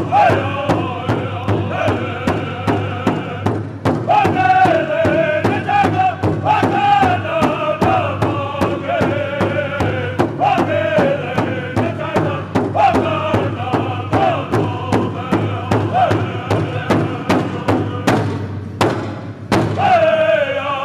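A powwow drum group singing in unison, men's high voices carrying a melody that steps downward through each phrase, over a large bass hand drum struck together by several drumsticks in a steady, even beat.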